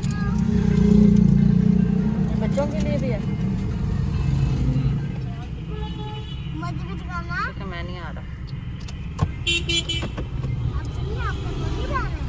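Car engine and road rumble heard from inside the cabin while driving slowly through a busy street, with a short vehicle horn honk a little before the end.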